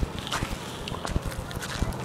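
Irregular footsteps scuffing and crunching over dry lichen and gravel on bedrock.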